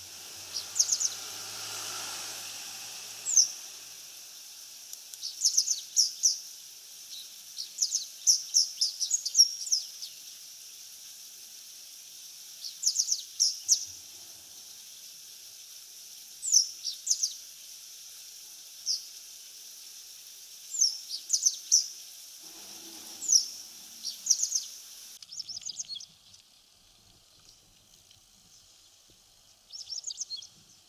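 Japanese wagtail singing: short phrases of quick, high, chirping notes, each phrase a cluster of two to five notes, repeated every one to three seconds with short pauses. It goes quieter about 26 s in, and one last phrase comes near the end.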